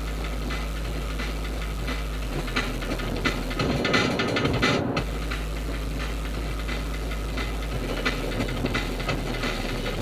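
Steady road, tyre and engine noise inside a car cruising at freeway speed, a constant low rumble. It swells for a second or so about four seconds in.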